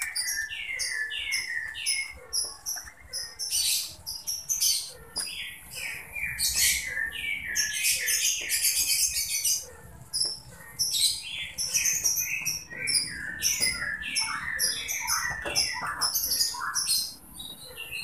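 Birds chirping busily, many short falling chirps in quick runs, with the scrape of a wooden spatula stirring a thick paste in an aluminium wok underneath.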